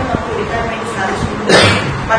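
A single sharp cough about one and a half seconds in, the loudest sound here, over a woman's speech.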